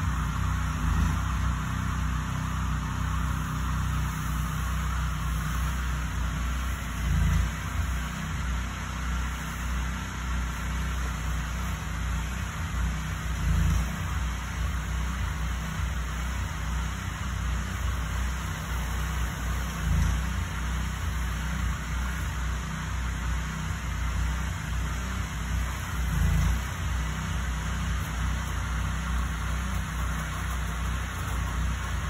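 Small engine of a house-washing pump rig running steadily, with a low rumble that swells briefly about every six and a half seconds.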